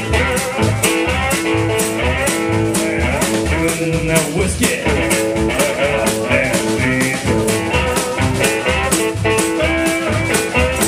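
Live blues trio playing an instrumental passage: guitar over upright double bass and a drum kit keeping a steady beat.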